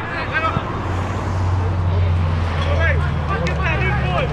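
Footballers' shouts and calls carrying across an open pitch, over a low rumble that swells in the middle and fades near the end.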